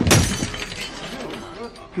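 Sudden loud crash of glass shattering at the start, fading over about half a second, with voices beneath.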